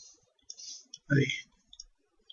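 Light computer mouse clicks, a few short sharp ones, with a couple of faint clicks near the end.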